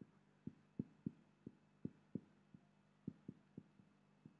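Faint, irregular low knocks, about a dozen in a few seconds, from a marker being written across a whiteboard, over a faint steady low hum.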